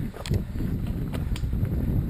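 Wind buffeting the microphone of a bike ridden fast along a dirt singletrack trail, a gusty low rush, with a few sharp clicks from the bike over the bumps.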